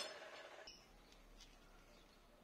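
Miter saw blade winding down after a cut, its fading hum ending abruptly under a second in. Then near silence with a few faint ticks.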